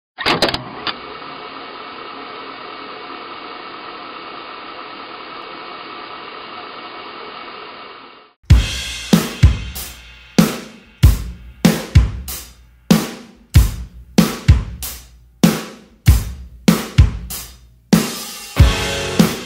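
A few sharp hits, then a dull steady hum for about eight seconds. At about eight and a half seconds a drum kit comes in with a steady beat, each beat a cymbal crash with a bass drum hit, a little under two a second, each ringing away before the next.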